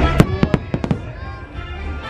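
A quick volley of about six sharp aerial firework bangs in the first second, over show music.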